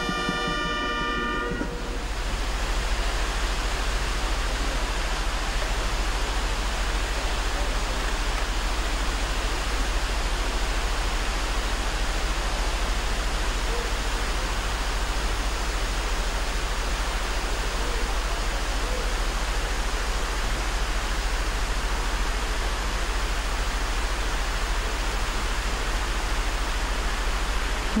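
Large fountains splashing, a steady even rush of falling water. A band's held chord ends about two seconds in.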